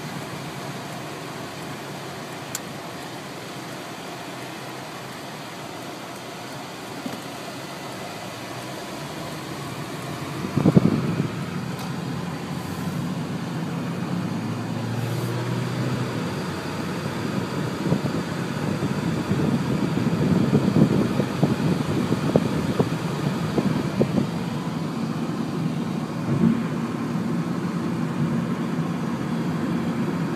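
Road and engine noise of a car heard from inside the vehicle, steady at first. A loud knock comes about ten seconds in, and the rumble grows louder and rougher with crackling through the second half.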